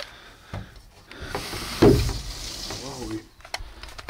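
Camera and gear being handled inside a wooden shooting blind: rubbing, scraping and light knocks against wood. The loudest is a rushing scrape about two seconds in.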